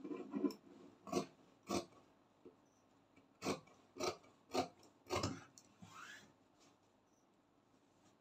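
Fabric shears cutting through fabric around a paper pattern: a run of separate snips about half a second apart that stop roughly two-thirds of the way through. The blades are cutting out a sleeve piece with its seam allowance.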